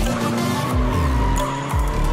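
Tyres squealing as a Toyota JZX100 drifts with its 1JZ-GTE turbo engine running, mixed with electronic music with a heavy, regular beat.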